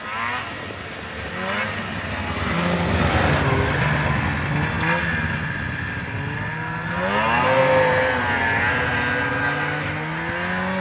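Snowmobile engines revving as the sleds ride by and climb the slope. The engine pitch rises and falls, swelling about three seconds in and again with a rising rev after about seven seconds.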